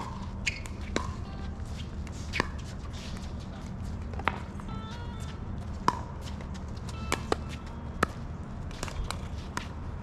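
Sharp pops of pickleball paddles striking the plastic ball, about ten hits at uneven gaps of roughly half a second to two seconds, over a steady low background hum.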